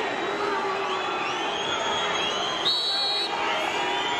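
Football stadium crowd noise with many fans whistling, their whistles rising and holding across the crowd's roar. About two and a half seconds in there is a short, shrill whistle blast, the referee's signal for the penalty to be taken.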